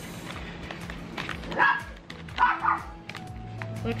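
A dog barking a few short times, about one and a half to three seconds in, over quiet background music.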